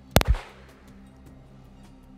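A single pistol shot a moment in, with a second, slightly softer crack hard on its heels, over background music with a light ticking beat.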